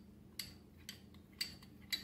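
Metal spoon clinking lightly against a small glass bowl while stirring cornstarch into water: four light clinks about half a second apart.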